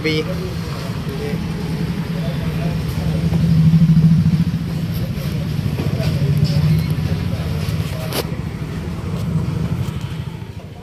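A motor running with a steady low hum, rising a little about four seconds in, with a single sharp click about eight seconds in.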